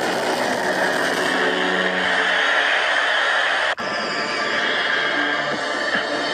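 Soundtrack of a fan-made Nickelodeon logo animation: a loud, dense rushing noise with a few steady tones under it. It breaks off for an instant nearly four seconds in, at a cut between logos, then goes on.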